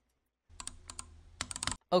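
Computer mouse clicking: a couple of sharp clicks about half a second in, then a quick run of about five clicks near the end, over a faint low hum.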